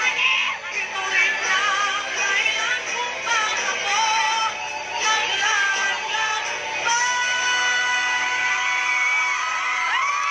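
A female singer performs live into a microphone with musical accompaniment, heard through the stage sound system. From about seven seconds in she holds one long steady note.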